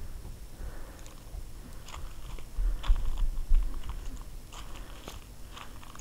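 Footsteps crunching irregularly on gravel as someone walks.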